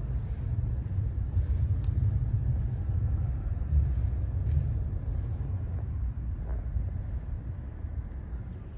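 A low, steady rumble, slightly louder in the middle, with faint soft hissing above it.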